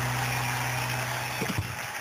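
A steady low engine hum under a hiss, with a couple of short knocks about one and a half seconds in, after which the hum weakens.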